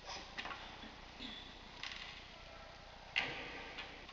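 Mobile phone keys being pressed by hand: a handful of short, irregular clicks, the clearest about three seconds in.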